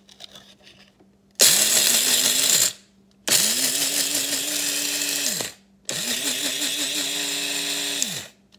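Electric coffee grinder grinding whole coffee beans in three pulses, each motor run lasting one to two seconds. In each pulse the motor's pitch rises as it spins up, holds with a slight wobble, and falls away as it is released.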